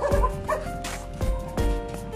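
Background music with sustained notes and a steady beat; a dog yips twice in the first half-second.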